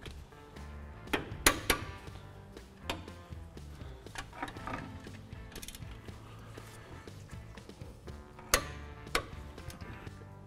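Torque wrench working the 15 mm brake caliper carrier bolts as they are torqued to 85 foot-pounds, with ratcheting and scattered sharp clicks. The loudest clicks come about a second and a half in and again near the end.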